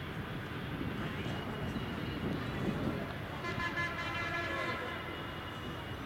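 A steady low rumble, with a horn sounding for about a second and a half a little past the middle.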